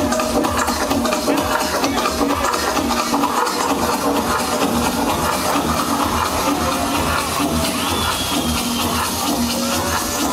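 Electronic dance music from a DJ set, played loud over a club sound system and recorded on the dance floor, with a short low synth note pulsing over and over and a high synth tone gliding briefly near the end.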